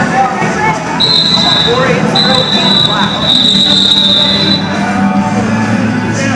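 Referee's whistle sounding two long, steady, high-pitched blasts, the second about three times as long as the first. Crowd voices and chatter echo in a large hall underneath.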